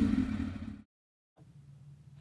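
A 2002 Suzuki GSX-R1000's four-cylinder engine, fitted with a Micron slip-on muffler, idling just after a rev. Its sound fades out within the first second and is followed by silence.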